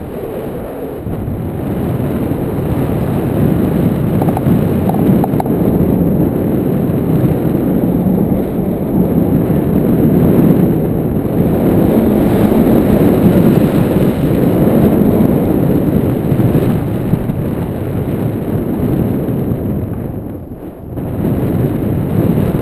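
Airflow buffeting the microphone of a pole-mounted camera on a tandem paraglider in flight: a loud, steady low rumble that swells and eases, dropping briefly near the end.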